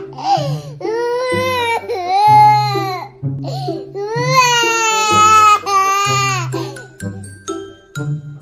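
A toddler crying hard in several long wails one after another, each rising and then falling in pitch, over background music with a repeating bass line. The wails grow weaker and shorter near the end.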